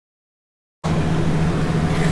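Silence, then a steady mechanical hum with a low tone and hiss that cuts in abruptly about a second in. It comes from the running car up on a workshop lift, a 2008 Hyundai Genesis.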